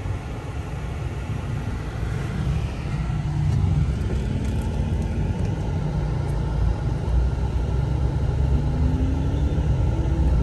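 A Toyota van's engine and road noise heard from inside the moving van: a steady low rumble that grows louder about three seconds in.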